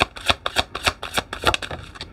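A tarot deck being shuffled by hand: the cards slap together in a quick run of crisp clicks, about five or six a second, thinning out near the end.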